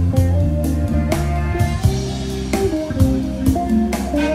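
PRS Zach Myers electric guitar playing an improvised lead over a recorded backing track with drums and bass.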